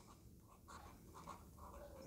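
Faint short strokes of a marker pen writing on paper, a few characters in quick succession.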